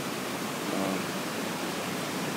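Steady rushing roar of the Potomac River's whitewater rapids at Great Falls, an even wash of water noise.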